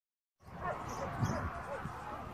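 Irregular low thumps and rumble of footsteps and phone handling while walking a dog on a paved path, starting about half a second in, with a few faint short whining sounds over them.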